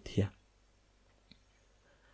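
A voice says one short word, then pauses in near silence, broken only by one faint click a little past the middle.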